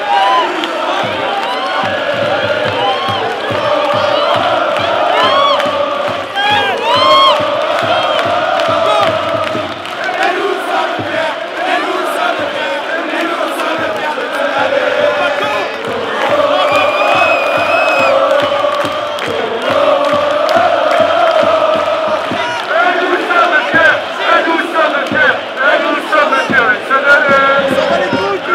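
Football stadium crowd chanting and singing together, with shouts rising over the mass of voices. It grows louder near the end.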